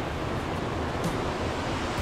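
Steady rush of a rocky mountain creek, water running fast over boulders.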